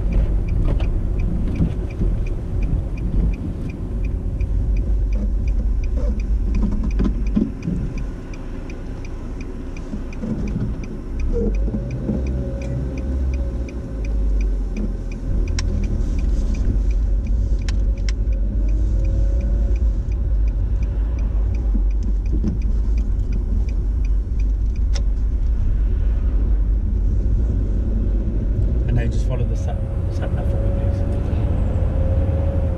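Inside a car cabin: engine and road rumble as the car pulls out of a junction and drives on, with the engine note rising from about 11 seconds in. The turn-signal indicator ticks steadily through the first half and stops about 16 seconds in.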